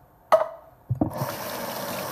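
Kitchen faucet turned on and running steadily into a stainless mesh strainer bowl of fruit being rinsed in the sink. A sharp clank with a brief ring comes about a third of a second in, and a couple of softer knocks just before the water starts at about one second.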